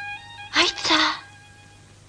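A short, loud two-part burst from a person's voice about half a second in, over a steady held note in the music.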